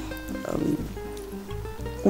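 Quiet background music with held notes over a low bass line.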